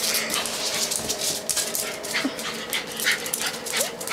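Jack Russell terrier scrambling about on a concrete patio, her claws clicking and scuffing in quick, irregular taps.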